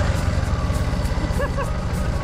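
Motorcycle engine running steadily at low speed with a fast, even pulsing. A short faint shout comes about one and a half seconds in.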